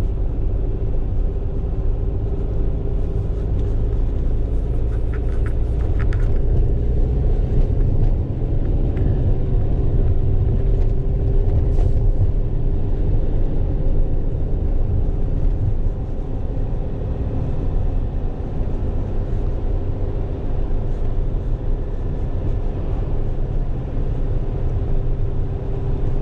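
Fiat Ducato van heard from inside its cab while driving: a steady engine hum over a continuous low road rumble.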